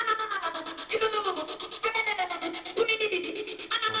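Electronic dance track played through DJ software with a gate effect switched on, chopping the music into a fast, even stutter. A short pitched phrase that falls in pitch repeats about once a second.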